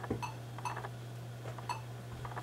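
A few short, widely spaced beeps from a Lenovo ThinkPad T460's system speaker, part of its 1-3-3-1 error beep code, which persists with a known-good memory module fitted. A low steady hum runs underneath.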